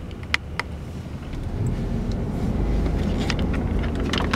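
Car cabin noise while driving: a steady low engine and tyre rumble that grows louder about a second and a half in. Two sharp clicks sound in the first second.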